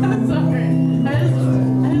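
Acoustic-electric guitar playing, with sustained low notes that change about once a second.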